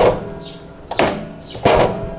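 Yamaha XMAX 300's steel side stand and its return spring being worked by hand: three sharp metal knocks, each followed by a short metallic ring.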